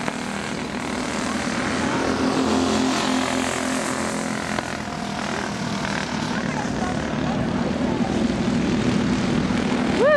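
Small racing go-kart engines running together on a dirt track, a steady buzzing drone that swells and fades slightly as the karts pass.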